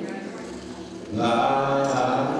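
A male preacher's voice intoning a sermon in a chanted, sing-song delivery into a handheld microphone: a quieter stretch, then a loud drawn-out phrase starting a little after a second in.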